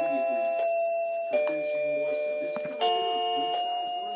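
Small toy accordion playing held chords that change about every second and a half, each chord sounding steadily with no fade.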